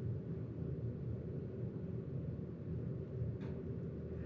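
Steady low background hum of room noise. A faint, brief soft sound comes about three and a half seconds in.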